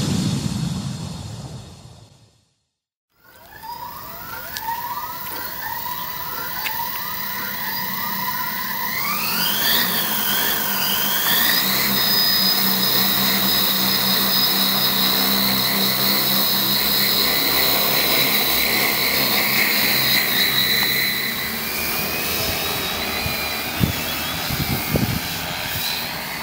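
A sound-effect whoosh fades out, then after a second of silence the brushless motors and propellers of a large JMRRC crop-spraying multirotor drone spin up. Their whine climbs in short repeated steps and then rises sharply as the drone lifts off, settling into a steady hovering whine that wavers slightly near the end.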